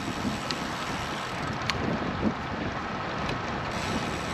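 Steady wind noise on the microphone of a camera riding on a moving road bicycle, in a gusty wind.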